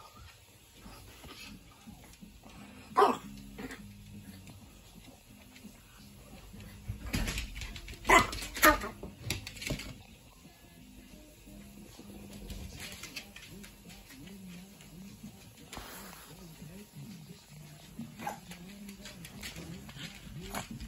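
Yorkshire terrier giving a few short, sharp yips or barks, loudest about three seconds in and twice in quick succession around eight seconds in, over background music.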